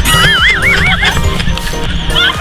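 Background music with a horse whinny sound effect: one wavering, quavering neigh lasting about the first second.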